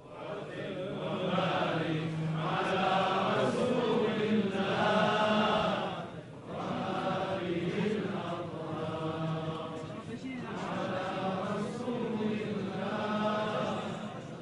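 Islamic devotional chanting: a voice sung in long, held melodic phrases, with short breaks about six and ten seconds in.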